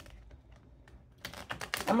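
A deck of tarot cards being shuffled by hand: quiet at first, then a quick run of sharp card clicks in the second half. A woman's voice starts right at the end.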